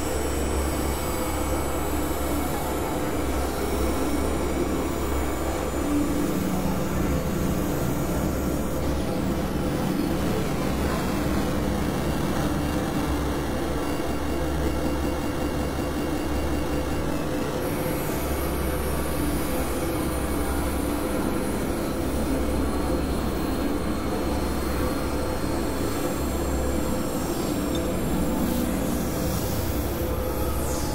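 Experimental synthesizer noise drone: a dense, steady, industrial-sounding wash over a low hum. High tones slide downward about ten seconds in and hold for several seconds before dropping away.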